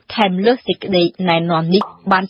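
Speech only: a voice narrating without a break.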